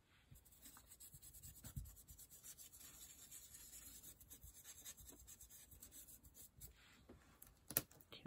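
Faint scratching and rubbing of a nearly dry paintbrush being dabbed through a stencil, with a sharp click near the end.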